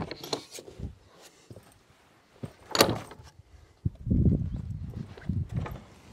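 Wooden shed window shutter being pushed shut against its bent metal latch: small clicks and knocks, a sharp wooden knock about three seconds in, then a low rumbling scrape for about a second.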